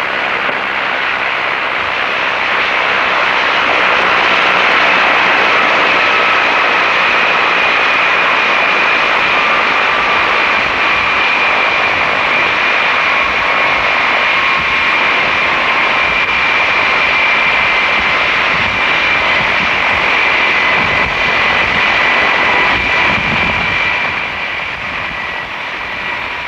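Turbine helicopter running on the ground with its rotor turning: a steady rush of rotor and engine noise with a thin high whine over it, easing slightly near the end.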